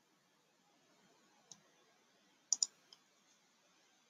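Computer mouse clicking over faint hiss: one click about a second and a half in, then a quick double click a second later and one fainter click just after.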